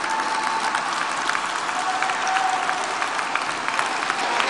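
An audience applauding steadily, many hands clapping together.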